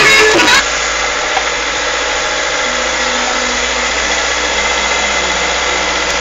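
Music cuts off about half a second in, leaving the steady hum of the vehicle's engine and road noise heard from inside the moving cab.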